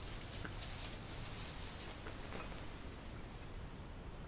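Faint, continuous rustling of baking paper, with a few light ticks, as a hot baked pizza on its paper is slid onto a wire cooling rack.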